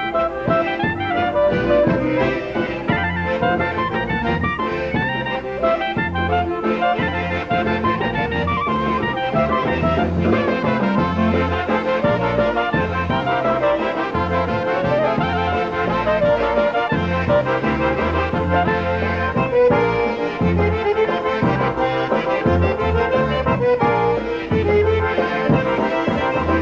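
Live polka band playing an instrumental dance tune: accordion and trumpets carry quick running melody lines over a steady bass and drum beat.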